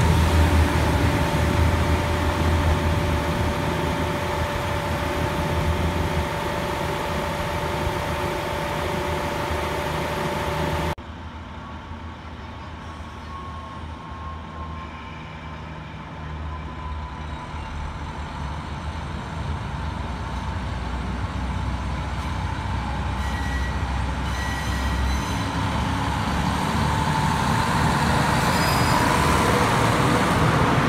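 Diesel railcars idling close by, their engines humming steadily. About eleven seconds in the sound cuts abruptly to a quieter diesel railcar train moving along the track, its engine and running noise growing louder as it draws near.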